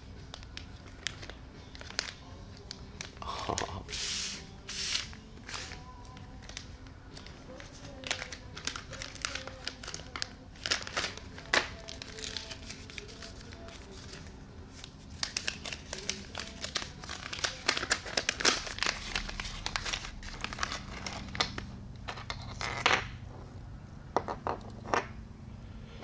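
Clear plastic packaging bag crinkling and rustling as it is handled and pulled open, with scattered small crackles and clicks.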